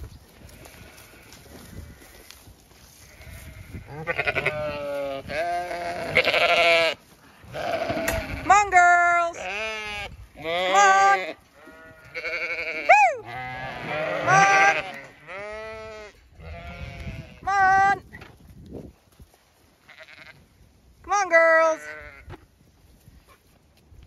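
A flock of Zwartbles ewes bleating, one call after another and sometimes several at once, starting about four seconds in and dying away shortly before the end.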